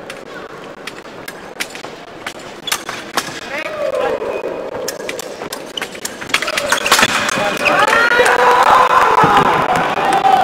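Sharp taps and clicks of fencing footwork and blade contact on the epee piste, then voices shouting and cheering over the last few seconds, the loudest part.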